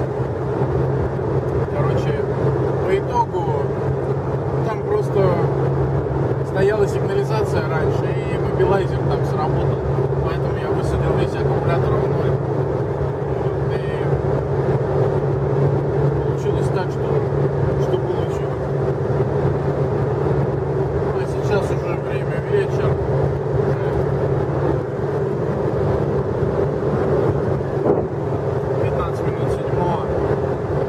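Steady drone of a car's engine and tyres heard from inside the cabin while driving at road speed, holding an even pitch throughout.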